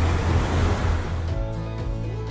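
Motorboat water taxi under way: rushing wind and water noise over a low engine rumble. About a second and a quarter in this cuts off, and background music with sustained chords takes over.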